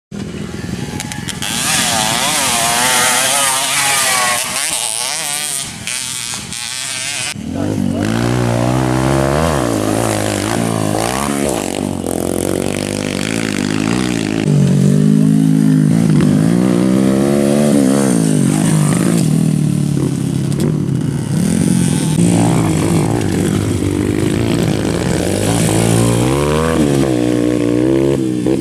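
Dirt bikes lapping a grasstrack circuit, their engines revving up and dropping back over and over as they accelerate and shift. For the first several seconds the engine note is high and buzzy; after that it is lower, with repeated rising sweeps of pitch.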